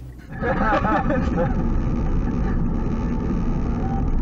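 Car cabin noise while driving: a steady low rumble of road and engine heard from inside the car, setting in about a quarter second in. A voice speaks briefly over it in the first second or so.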